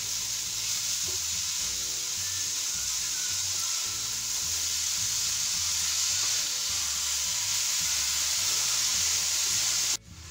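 Grated carrots and sugar sizzling steadily in a non-stick pan while being stirred with a wooden spatula, the sugar melting into the carrots as the halwa cooks down. The sizzle cuts off suddenly at the end.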